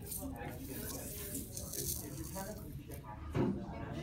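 Playing cards sliding and being shifted across a tabletop by hand, with a single thump about three and a half seconds in. Voices talk in the background throughout.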